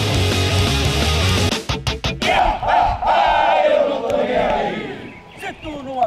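Rock music with a heavy bass line that cuts off about a second and a half in; after a few sharp knocks, a group of riot-troop police officers shouts together in a loud, drawn-out battle cry that dies down near the end.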